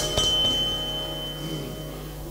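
Harmonium chord held after the last drum stroke, fading out, with a thin high steady tone ringing above it until near the end.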